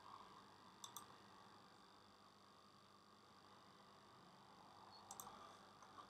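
Near silence: faint room tone with a few short clicks, a pair about a second in and another pair about five seconds in.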